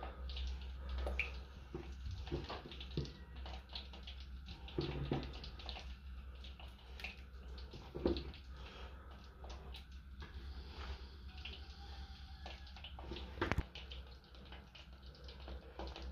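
Pork sausages frying gently in melted lard in a metal pot over a low flame: a faint, steady crackle and bubbling of hot fat. A few sharper knocks, the clearest about 13.5 seconds in.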